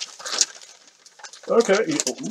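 Paper wrapping crinkling and rustling as it is pulled off an item, a quick run of crackles in the first half second that then dies down.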